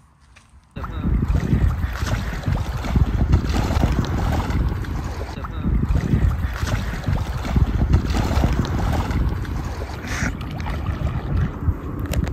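Wind buffeting the microphone: a loud, gusting rumble that starts suddenly about a second in and swells and eases throughout.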